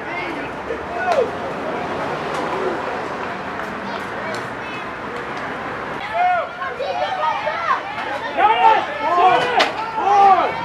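Overlapping, indistinct voices of spectators, coaches and players at a youth football game. From about six seconds in, several voices call out louder at once.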